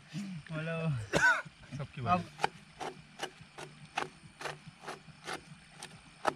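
A small knife slicing through an onion held in the hand: crisp, even cuts about two or three a second, starting about two seconds in after a moment of voices and laughter.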